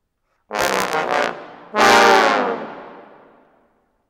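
Trombone ensemble with a bass trombone playing a short phrase about half a second in, then a loud closing chord about two seconds in that dies away in the concert hall's reverberation.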